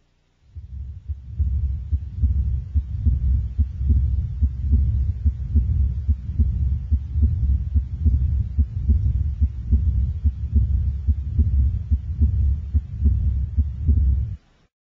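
Stethoscope recording of a child's cervical venous hum: a continuous low hum with the heartbeat pulsing steadily through it. This is a normal finding, the most common continuous murmur in children.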